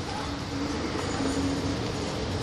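Steady vehicle rumble and hiss with a faint low engine hum, unchanging throughout.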